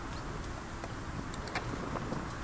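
Steady outdoor background noise on the camera's microphone, with a few faint clicks.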